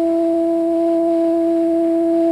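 A high school concert band holding one long steady note, a single sustained pitch from the winds or brass.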